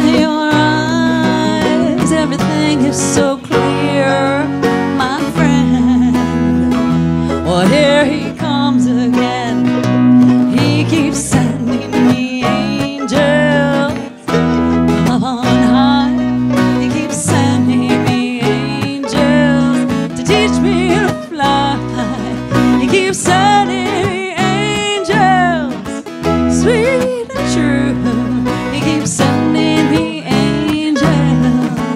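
Small live band playing a song: strummed acoustic guitar, electric bass and mandolin, with a wavering lead melody over them.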